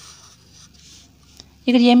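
Faint scratching of a graphite pencil on paper as a loop is drawn around a word on a worksheet, with one small click near the end. A woman's voice starts just before the end.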